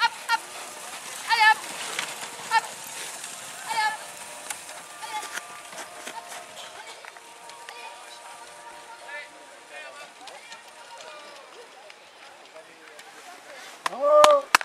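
People's voices: a series of short, loud shouted calls, about one every second or so in the first four seconds, then quieter scattered voices over a low background haze.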